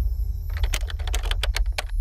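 Typing sound effect: about ten quick keystroke clicks over a little more than a second, over a low, steady music drone.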